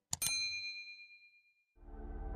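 A bright bell-like ding, struck twice in quick succession and left to ring out for about a second and a half. Music starts to fade in near the end.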